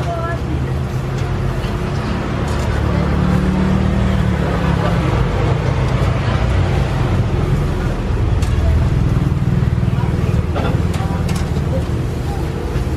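Steady low engine rumble of road traffic, with a vehicle running close by, swelling slightly a few seconds in.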